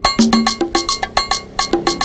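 Film background music starting suddenly: quick, rhythmic percussion with bell-like strikes, about six a second, over short low notes.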